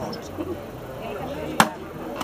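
Leveraxe splitting axe striking a firewood log once, a single sharp crack about one and a half seconds in.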